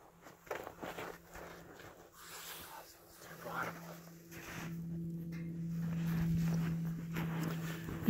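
Footsteps in snow and handling noises, with a steady low hum that grows louder about halfway through.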